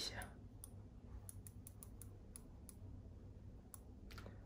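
Rotary ring of a wireless steering-wheel remote controller being turned, giving about nine faint, irregularly spaced clicks as it steps a car head unit's volume.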